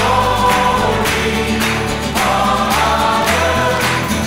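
Choir singing a Christian worship song over instrumental accompaniment with a steady beat.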